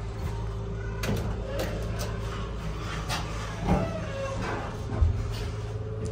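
Dover Impulse hydraulic elevator car riding between floors: a steady low hum with a few light knocks and clunks from the car.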